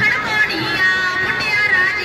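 Punjabi dance song playing: a singing voice carrying the melody over instrumental music.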